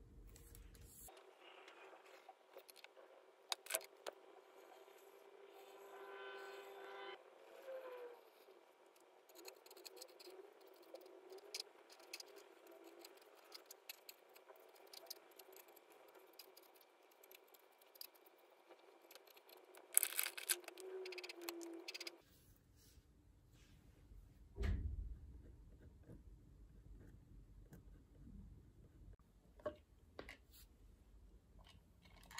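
Light desk-work handling sounds of pencil, ruler and paper: scattered small scrapes, taps and clicks, with a brief denser clatter about two-thirds of the way in and a dull thump a few seconds later.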